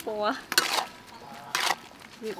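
Metal spatula scraping and clanking against a wok while stir-frying squid and greens: two strokes about a second apart.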